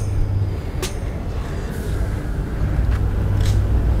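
A steady low rumble, with a single sharp click about a second in.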